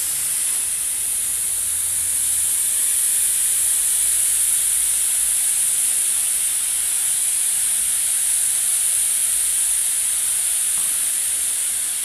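Gravity-feed spray gun spraying red paint: a steady, high compressed-air hiss that runs without a break.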